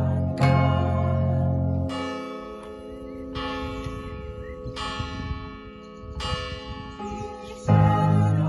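The Martinskirche's church bells (an F bell of 1651 and A-flat and C bells of 1959) struck one stroke at a time, about every second and a half: five strokes, each ringing on and dying away. The band's bass and keyboard play under the first stroke, stop about two seconds in, and come back in near the end.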